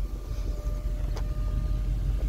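Electric motor of a BMW 8 Series convertible's power trunk lid whining faintly and steadily as the lid is closed, stopping just before the end, over a low rumble. A light click comes about a second in.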